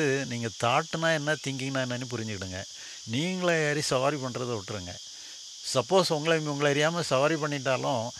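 A man talks into a microphone over a steady, high-pitched chorus of insects that carries on unbroken through his pauses.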